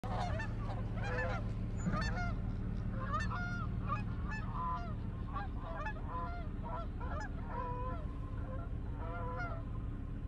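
A flock of geese honking in flight, many overlapping calls throughout, over a steady low rumble.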